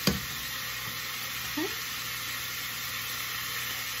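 Bacon and onions sizzling in a frying pan, a steady hiss, with a brief knock right at the start.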